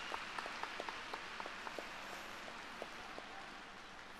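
Audience applause in a large hall, many scattered claps over a hiss of hands, gradually thinning and fading.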